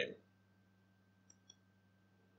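Two faint computer mouse clicks in quick succession about a second and a half in, over a faint steady low hum; otherwise near silence.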